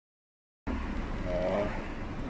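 Steady low engine hum and road noise heard inside a car's cabin while it waits in gear at a junction. The sound cuts in abruptly about two thirds of a second in after dead silence. A brief pitched, wavering sound comes about halfway through.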